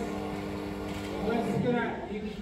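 Voices in a large room over a steady droning hum, which fades about three-quarters of the way through.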